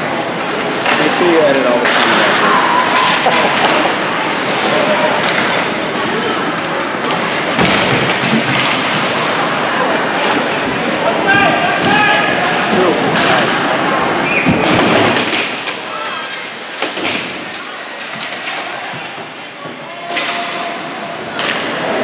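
Ice hockey game in an indoor rink: indistinct voices of spectators talking and calling out, with sharp thuds and slams of the puck and players hitting the boards several times.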